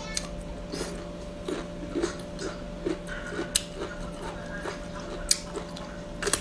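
A person chewing hand-peeled bamboo shoots in a steady rhythm of about two chews a second, with a couple of sharp clicks in the second half, over a steady low hum.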